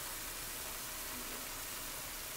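A pan of ground turkey, onion and green chilies sizzling gently on low to medium heat as a steady, even hiss.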